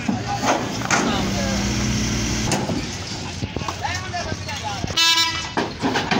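Voices and a vehicle engine running, with a short, loud horn honk about five seconds in.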